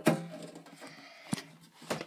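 Two sharp knocks about 1.3 seconds apart from the phone being handled as it is swung around, over a faint steady background of radio playing.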